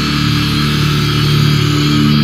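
Distorted electric guitar and bass holding the closing chord of a death metal track, ringing steadily without new strokes.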